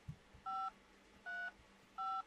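Touch-tone (DTMF) key beeps from a Motorola Moto G04's in-call dial pad as keys are pressed: two short two-note beeps about three-quarters of a second apart, with a third starting at the end.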